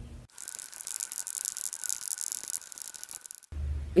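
A short music sting, mostly bright, hissy high sounds over one steady held tone, starting just after the start and cutting off sharply about half a second before the end.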